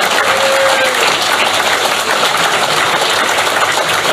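A large indoor audience applauding, with dense, steady clapping that holds at the same level throughout.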